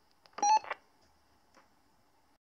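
A short electronic beep from a PMR two-way radio, about half a second in, as the transmission on 446.19375 MHz ends.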